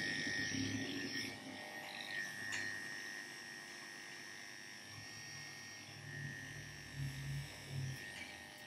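Wahl KM10 electric dog clipper with a #30 blade running with a steady whine as it shaves the fur from a dog's paw pads. It is a little fainter after the first second.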